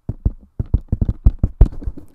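A rapid run of percussive mouth pops and clicks made right against a close microphone, about eight a second, imitating a fast vocal melody. The loudest pops overload the mic.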